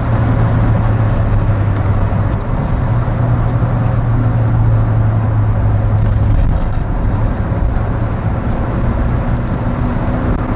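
A car driving at road speed: a steady low engine hum over tyre and road noise. The hum eases off about seven seconds in, and a few faint clicks come near the end.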